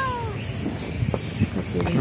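A domestic cat meowing once, a short call that falls in pitch, right at the start.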